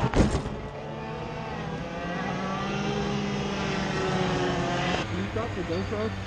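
A heavy crash impact as an overturned go-kart comes down, then go-kart engines running with the pitch slowly rising.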